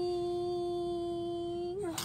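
A baby holding one long, steady vocal note, like a sustained hum or 'aah', which wavers and breaks off near the end.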